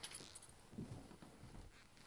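Near silence with a few faint, soft footsteps of someone walking away across a room, after a brief light metallic jingle at the start.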